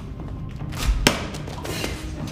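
A heavy thud about a second in: a tape-wrapped egg-drop package, an egg padded with band-aids, brownie boxes and toilet-paper rolls, thrown hard and hitting the floor, with background music.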